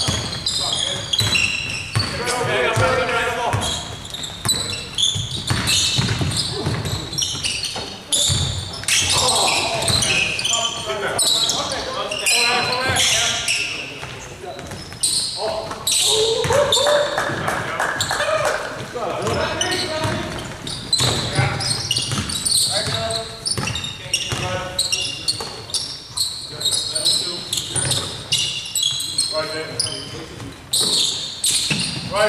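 Basketball game in a large gym: a ball bouncing on the hardwood floor again and again, with players' indistinct voices calling out, echoing in the hall.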